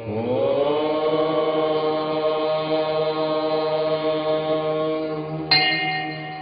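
Devotional chanting: one long held note that slides up in pitch over the first second and then holds steady over a low drone. About five and a half seconds in, a brighter, higher tone joins.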